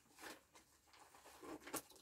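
Near silence, with a few faint, brief rustles and a soft click near the end from someone reaching down and handling things.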